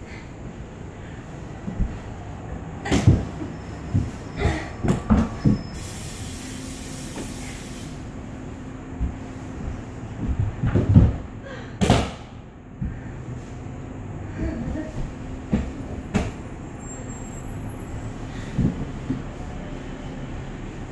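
Dancers' bodies and feet knocking, thudding and sliding on a hard concrete floor as they fall and roll, in irregular strikes that come in clusters. A faint steady hum comes in about six seconds in and runs on underneath.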